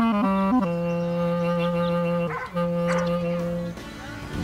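Solo clarinet: a few quick notes, then a long low note held for nearly two seconds, a short break for breath, and the same low note held again for about a second.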